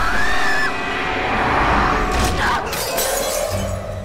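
A framed photo's glass shattering in a crash a little past halfway, over tense horror film music.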